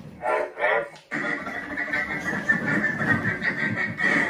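Chopper (C1-10P) droid replica sounding off through its speaker with droid vocalizations: a short warbling, pitched call, a sudden break about a second in, then a longer, noisier stretch of chatter.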